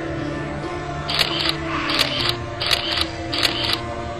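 Four camera-shutter sound effects, evenly spaced about three quarters of a second apart, over steady background music.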